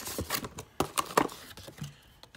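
Clear plastic blister pack and its cardboard backing being handled, giving a quick run of sharp crackles and clicks that is loudest about a second in, then thins to light rustling.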